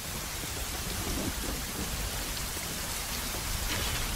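Heavy rain falling steadily in a film's storm scene, a dense, even hiss with a low rumble underneath.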